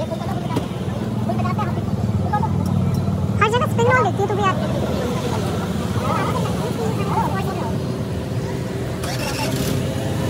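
Steady rumble of passing road traffic, with people talking close by; one voice stands out clearly from about three and a half to four and a half seconds in.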